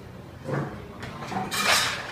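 Bar tools and glassware being handled: a knock about half a second in, then a louder, brief rattling rush near the end.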